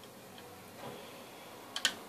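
Faint ticking from a multi-turn trimmer potentiometer being turned with a small screwdriver, then one sharp click near the end. The current-adjust trimmer is being wound down toward its end stop, where it clicks.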